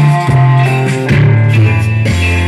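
Live cumbia band playing: electric guitar and keyboard over a strong, moving bass line.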